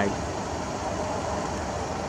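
Steady low background rumble with no distinct events, such as an engine or traffic noise.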